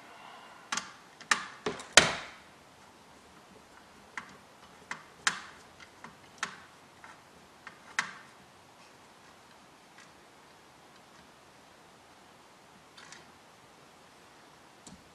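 Screwdriver and mounting hardware clicking and tapping against a metal radio chassis as a control is fastened in place. There are about a dozen sharp, irregular clicks over the first eight seconds, the loudest about two seconds in, and a couple of faint ones near the end.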